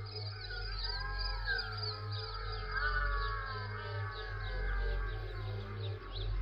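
Electronic acid-techno music with no drum beat: a low bass swells and fades about every two seconds under synth tones that glide up and down, with quick high chirping sweeps above.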